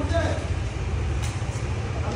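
A motorcycle engine idling, a steady low rumble with an even pulse, under faint voices.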